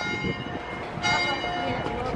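Church bells ringing for twelve o'clock, several bell tones sounding over each other and hanging on, with a fresh strike about a second in.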